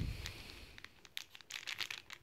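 Hot cocoa mix packet crinkling as it is handled in the hands: faint, irregular crackles that grow denser in the second half.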